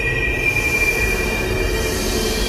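Electronic music: a high sustained whining tone held over a steady low bass drone, fading near the end.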